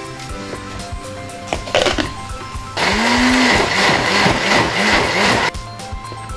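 Countertop blender motor switching on about three seconds in and running for under three seconds, chopping soaked dried peppers and crayfish into a coarse paste. Its pitch rises at start-up and then sags and recovers several times before it cuts off suddenly.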